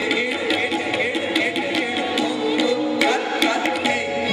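Live Kathak accompaniment: tabla playing a rapid run of strokes under a sustained sarangi melody.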